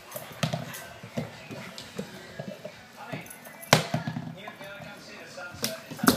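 Scattered soft thumps and taps of a young Ibizan hound playing and bounding around the room, with a sharp knock a little past the middle and another near the end.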